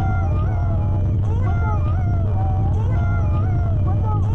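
Electronic music from synthesizers and effects: a deep steady drone under gliding, wavering tones, with a pattern that repeats about every second and a half.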